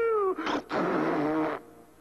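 Cartoon ogre character's voice crying and blubbering: a wavering wail that rises and falls, then a longer rough, breathy sob that fades out near the end.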